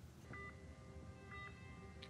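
Faint short electronic beeps, about one a second, from a hospital patient monitor by a bedside.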